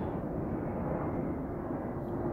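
A steady low rumble of background noise with no clear voice over it.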